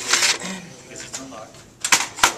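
Plastic paper tray of a laser printer sliding out with a short rasp, followed near the end by a couple of sharp plastic clicks and knocks.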